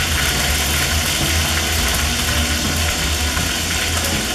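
Rabbit pieces sizzling steadily as they sear and brown in a clay cazuela, over a constant low hum.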